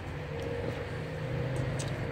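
A motor vehicle's engine running, heard as a steady low hum with one steady higher tone held over it.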